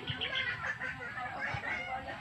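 Birds calling in the background, a busy run of short, irregular calls.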